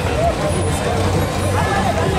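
Street crowd voices chattering and calling over a low, steady rumble.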